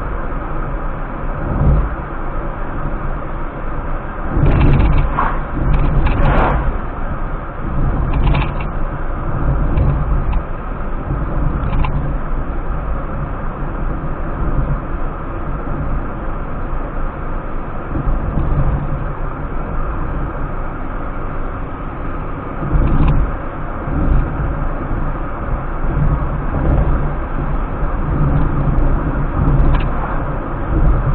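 Inside a car driving at road speed on a highway: steady engine and tyre rumble with road hiss. A few brief knocks and rattles come through about five seconds in, and again a little after twenty seconds.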